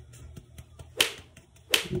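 Rubber-gloved hand slapping a whole flour-coated red snapper lightly, twice, about a second in and near the end, to knock off the excess flour.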